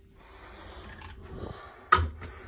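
Faint rubbing and handling noise, then one sharp knock near the end.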